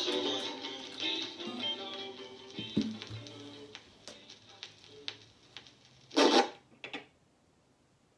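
Strummed acoustic guitar ending its song: the last chords ring out and fade away over about four seconds. Near the end a loud bump and a smaller one follow, then near silence.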